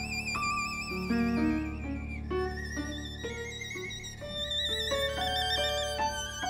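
Violin playing a quick melody with vibrato, accompanied by a grand piano.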